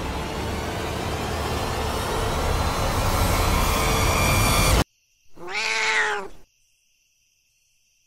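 A dense noisy horror swell builds louder for almost five seconds and cuts off abruptly; after a brief silence a cat meows once, a single drawn-out call.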